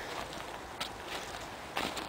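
Faint footsteps on thin snow over frozen soil, with a light click about a second in.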